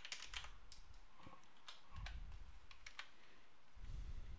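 Computer keyboard being typed on: a quick, faint run of key clicks as numbers are entered, with a couple of dull thumps.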